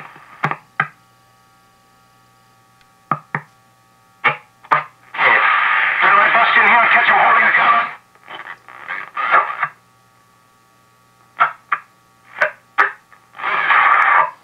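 1938 Silvertone model 6125 tube radio on its shortwave band, its dial turned up toward 14 megahertz: short snatches of broadcast voices and static come through its speaker as stations pass. A denser burst of noisy signal lasts nearly three seconds about five seconds in, with faint steady whistles underneath.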